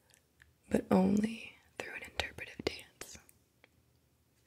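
Soft, close-miked whispered speech, with a briefly voiced stretch about a second in and a few small clicks.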